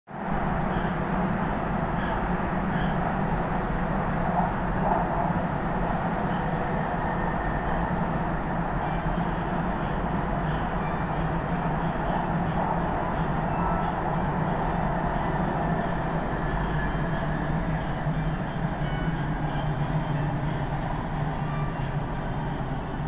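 Interior running noise of a Kuala Lumpur MRT metro train in motion: a steady rumble of wheels on the track with a constant low hum, level and unchanging throughout.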